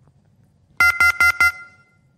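Four quick beeps of a telephone line's disconnect tone, about five a second, the last one ringing on briefly: the sign that the caller's line has dropped.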